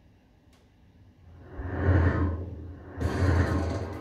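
Television news transition sting: after about a second of near silence, two swelling whooshes with a deep rumble beneath, the second coming in sharply about three seconds in.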